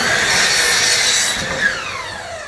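Craftsman miter saw running and cutting through a number two pine board, with a dense high whine and hiss. About one and a half seconds in the cutting noise drops away and the motor whine falls in pitch as the blade spins down.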